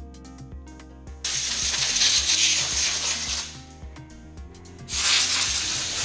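Aerosol spray can hissing in two bursts onto a camshaft, the first about two seconds long, the second shorter near the end, over background music.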